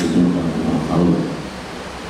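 A man's voice over a microphone, trailing off about a second in, followed by a short pause that holds only a low background rumble and hiss.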